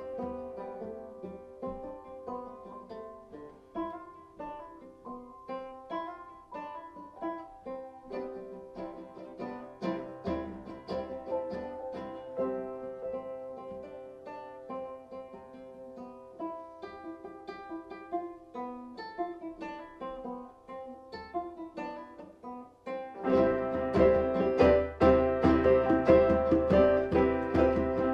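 Seven-string banjo picking a melody, quiet and sparse. About 23 seconds in, the playing grows much louder and fuller, and a deep low part comes in.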